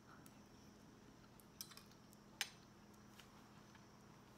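Near silence with a steady low hum, broken by a few faint clicks and one sharper tap about two and a half seconds in: a metal fork set down on a dinner plate.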